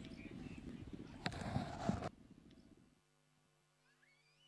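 Faint racetrack ambience from the live race feed, a rough noisy rumble with one sharp click, cutting off suddenly about two seconds in. Faint music with a slow, steady pulse starts near the end.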